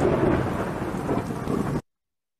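A loud rumbling, thunder-like noise from the played-back tutorial video, cut off suddenly near the end as playback is paused.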